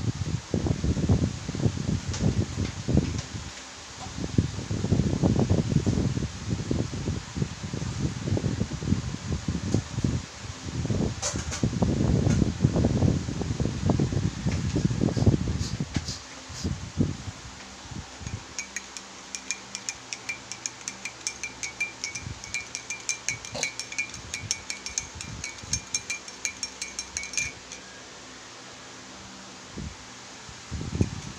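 Gusty low rumble of air buffeting the microphone, loudest in the first half. From a little past halfway, for about nine seconds, rapid light clinking, several a second, of a spoon stirring coffee in a ceramic mug.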